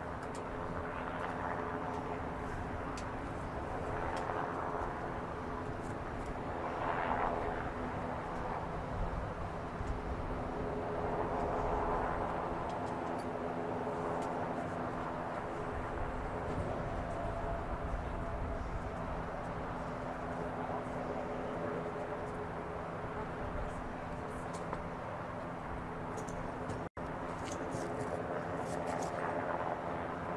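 Steady outdoor drone of running engines with a constant low hum, and indistinct, far-off voices that rise and fall from time to time.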